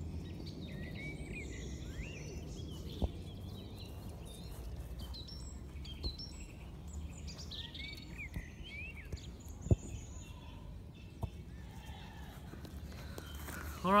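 Several birds chirping and singing over a low steady rumble, with four sharp knocks spread through it.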